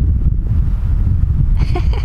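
Wind buffeting the microphone in a loud, dense low rumble, as when filming out of a moving vehicle's window.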